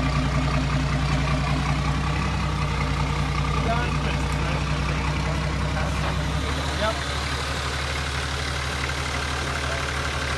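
A 4x4 truck's engine idling steadily close by. About six and a half seconds in its note changes and gets a little quieter.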